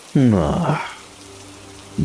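Steady rain falling, a sound-effect bed running under the dialogue of an audio drama. It is heard on its own through the second half, after a spoken word.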